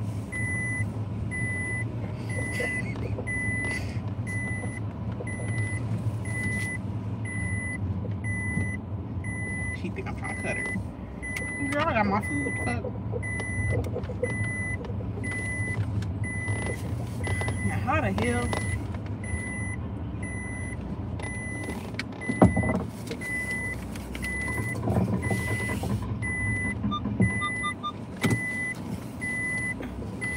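Inside a car with the engine running, the car's electronic warning chime beeps steadily and evenly over the low hum. A voice hums or murmurs twice, and there is a single sharp knock a little past the middle.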